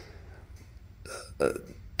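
A pause in a man's speech: quiet room tone, broken once by a short hesitation "uh" about a second and a half in.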